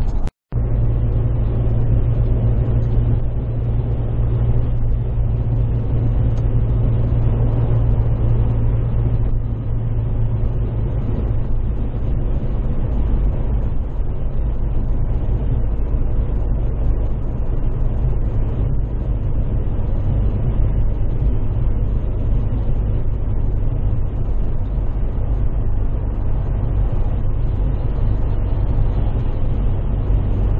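Inside a car's cabin at motorway speed: a steady low engine drone with tyre and road noise. The audio drops out completely for a moment about half a second in.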